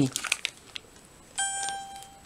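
Handheld Pebble mini electronic video magnifier giving a single steady electronic beep, about three-quarters of a second long, starting about a second and a half in. Before it come a few light clicks and crinkles of the device and the foil sachet being handled.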